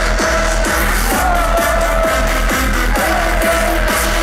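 Electronic dance music played loud over a festival stage sound system: a kick drum about twice a second under heavy bass, with a held synth lead line.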